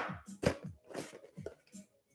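A man's voice in a string of short, quiet murmured sounds, each falling in pitch.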